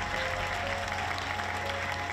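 Audience applauding steadily, with background music of held notes underneath.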